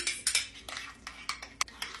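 A metal spoon clinking and scraping against small ceramic bowls in a quick, irregular run of clicks, as honey-sriracha sauce is worked into whipped cream cheese.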